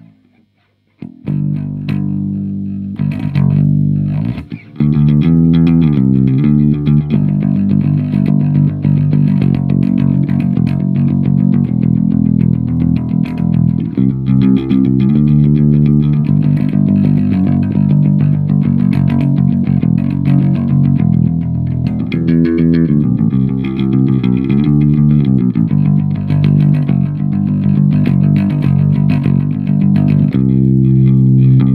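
Four-string electric bass guitar played fingerstyle: a bass line that starts about a second in and plays at a steady, fuller level from about five seconds in.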